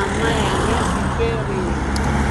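Road traffic going by: cars passing with a steady low rumble, under a woman's voice that holds and bends long notes.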